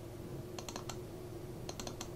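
Computer mouse button double-clicked twice, in a quick cluster of clicks about half a second in and another near the end, as folders are opened. A steady low hum runs underneath.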